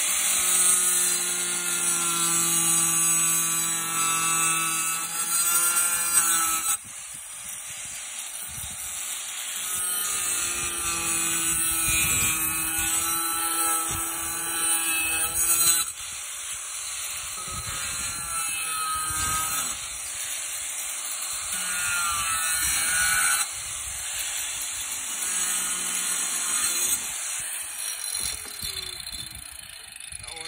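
Small electric angle grinder running at high speed and cutting notches into the base of a plastic bucket, its motor pitch steady with slight wavering as the disc bites. The sound breaks off and resumes abruptly several times.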